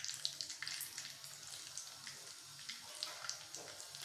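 Hot oil in a small iron tempering pan on a gas burner, sizzling with scattered sharp crackles and pops.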